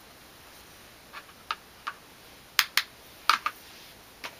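A run of about seven short, sharp, light clicks at uneven intervals, starting about a second in, the loudest grouped in the second half, over a faint steady hiss.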